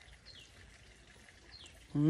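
Faint outdoor quiet with a bird giving two short high whistles, each falling in pitch, about a second and a half apart. Right at the end a man makes a brief vocal sound.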